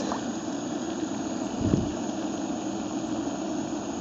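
A steady low hum, with one low thump a little under two seconds in, as a large grass carp is held in shallow water to revive it.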